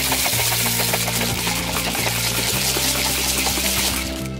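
Personal bullet-style blender motor running in one steady burst and cutting off at the end, with low background music underneath.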